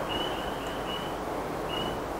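Strong wind blowing outside the workshop, a steady rushing noise. A faint high-pitched tone breaks off and returns several times over it.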